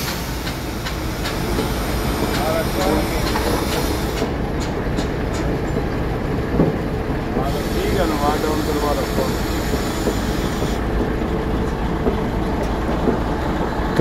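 Kato 50-ton mobile crane's diesel engine running steadily at work, a constant low rumble with a steady hum over it, with faint voices now and then.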